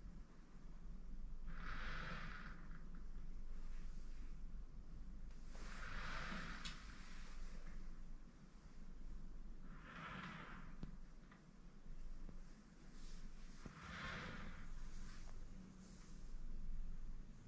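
Slow, quiet breathing close to the microphone: four breaths about four seconds apart, over a low steady hum.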